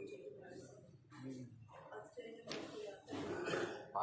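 Paper pages of a small book being turned, with soft murmuring and throat-clearing sounds from a man and a sharp click about two and a half seconds in.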